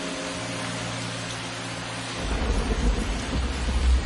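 Steady rain hiss, joined about two seconds in by a low rumble of thunder that swells toward the end.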